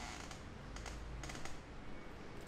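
A few short, soft clicks and sticky crackles from hands working skincare product during a facial massage, close to the microphone, with a cluster of them about a second in.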